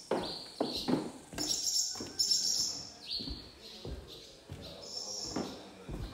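Birds chirping in short high calls, over dull footsteps on a debris-covered floor.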